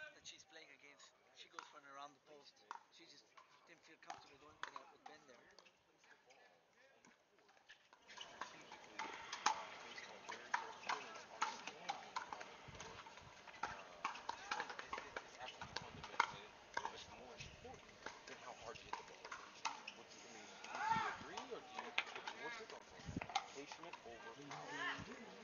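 Pickleball paddles hitting the plastic ball in a dinking rally at the net: a run of sharp pops, a few each second, louder from about eight seconds in, over murmuring spectators' voices.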